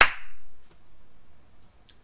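A single sharp smack of a hand, a crack with a short ring-out at the very start.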